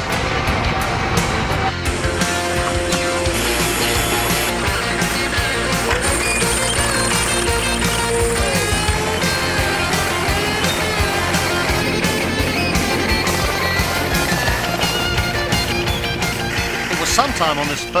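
Rock music playing loudly and steadily, with guitars and a beat.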